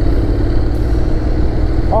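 Motorcycle engine running steadily under way, with a steady low rumble of riding noise on the microphone.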